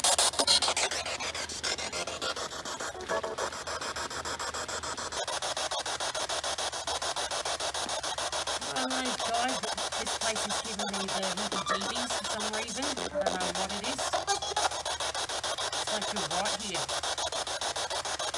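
Spirit box sweeping through radio stations: a steady, rapidly chopped hiss of static, with brief broken fragments of voices in the middle, taken as spirit answers.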